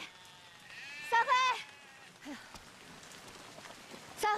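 Goats bleating in a small flock, with a woman shouting a name across the open field; one loud, wavering call stands out about a second in.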